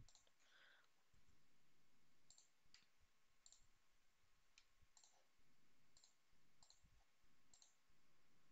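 Near silence: faint room tone with about eight scattered, faint clicks from a computer mouse and keyboard in use.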